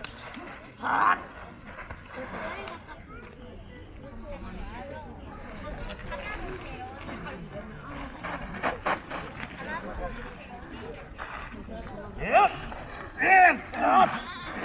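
Men's sharp fighting shouts (kiai) during a staged sword fight, loudest as a quick pair of rising-and-falling yells near the end. A couple of sharp knocks sound about two-thirds of the way through.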